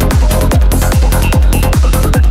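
Psychedelic trance track playing, with a kick drum about two and a half times a second over a low bassline between the kicks, and high hi-hat ticks.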